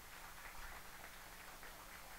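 Audience applauding faintly, a steady patter of many hands clapping.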